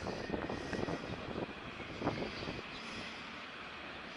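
Wind rushing over the camera's microphone, steady with a few louder gusts.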